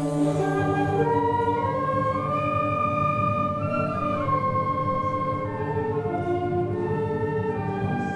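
High school concert band playing a carol arrangement in long held notes: sustained wind chords under a melody that climbs and then steps back down.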